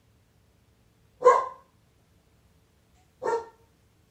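A dog barking twice, once about a second in and again near the end, the second bark quieter.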